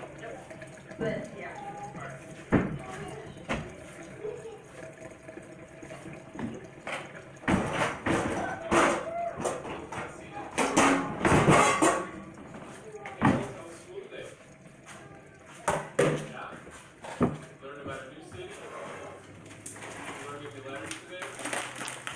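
Kitchen items being picked up and set down on a counter: scattered knocks and clunks, busiest and loudest around the middle, with indistinct voices underneath.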